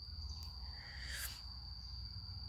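A steady high-pitched insect buzz, like a cricket's, over a low hum. A soft rush of noise swells and fades about a second in.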